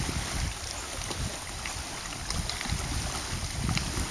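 Wind buffeting the microphone in uneven gusts, over a steady hiss of small waves lapping at the shore.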